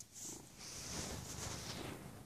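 Domestic cat purring steadily, close up.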